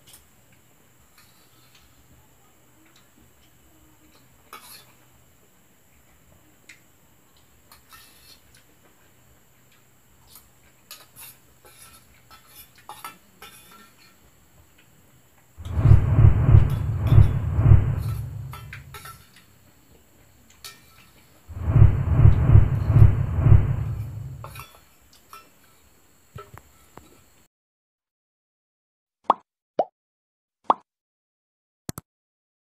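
Faint clicks and clinks of a person eating by hand from a metal plate. Two loud stretches of noise, each about three seconds long and heaviest in the bass, interrupt it in the second half. The sound cuts to dead silence near the end, followed by a couple of short clicks.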